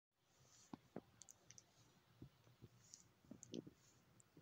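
Near silence with faint, scattered clicks and soft rustles from a hand stroking a cat's head and fur close to the microphone.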